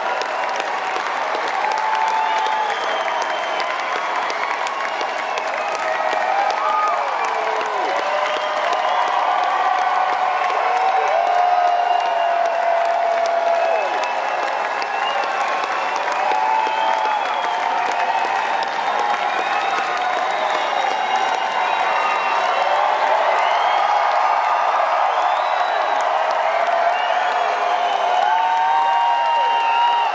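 Concert audience applauding and cheering, with many shouts and whoops over continuous clapping, swelling a little about six seconds in.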